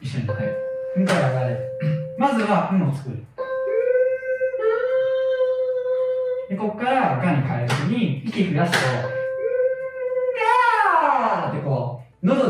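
Men's voices doing a mixed-voice exercise: a high head-voice hum held steady on one pitch, turning into a 'ga' vowel, three times. The last one ends in a long slide down in pitch.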